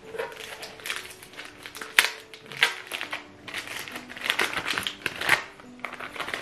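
Gift-wrapping paper being torn and crinkled by hand as a wrapped book is unwrapped: a run of rustles and rips, with a sharp tear about two seconds in.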